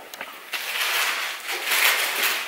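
Handling noise from a hand-held camera: rustling and rubbing near its microphone as it is taken and moved, starting about half a second in.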